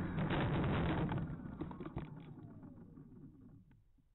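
Radio-control foam cargo plane touching down on a concrete runway, heard from its onboard camera: bumping and scraping along the surface as it slows to a stop. Under that, its motor winds down in a falling whine that stops just before the end.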